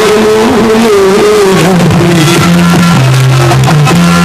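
Loud music: a wavering melody line over a bass that steps between held notes from about halfway through.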